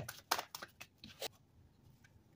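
Tarot cards being drawn from the deck and laid down on the table: a quick series of short light card snaps and taps in the first second and a half, then quiet handling.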